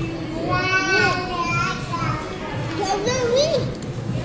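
A young child's high-pitched voice making wordless sounds in two stretches, the first about half a second in and the second near three seconds in, its pitch sliding up and down. There is background chatter throughout.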